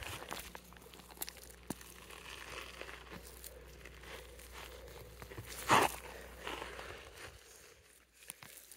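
Faint rustling and crunching of weeds being picked by hand, with steps on gravelly dirt and a few small clicks.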